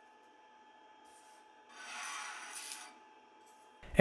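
Thin one-layer test prints being scraped and rubbed off a 3D printer's print bed: a faint short scrape about a second in, then a longer rasping scrape of about a second in the middle.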